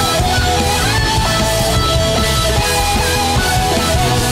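Live hard rock music in an instrumental break, with no singing: an electric violin plays a gliding lead line over distorted guitar, a drum kit and a large orchestra.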